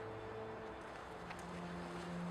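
Steady outdoor rushing hiss of wind and ambience in a forest, under faint held low notes of a soft ambient film score: one fades out early and a new low note enters about one and a half seconds in.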